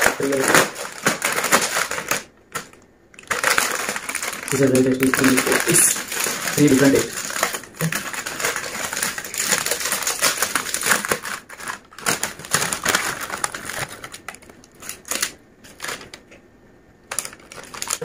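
Crinkly plastic snack packet being handled and torn open, a dense crackling rustle made of many small clicks, with two short pauses.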